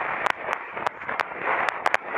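Rushing, buffeting noise on a bike-mounted camera's microphone while riding in traffic, broken by scattered sharp crackling clicks.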